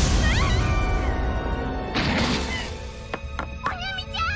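Anime battle-scene soundtrack: music over a deep rumble. A girl's high-pitched cry comes near the start, a crash about two seconds in, and a young girl's wavering, tearful call near the end.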